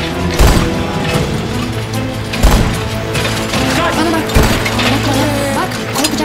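Dramatic background score with steady held tones and three deep booming hits about two seconds apart, with voices underneath in the second half.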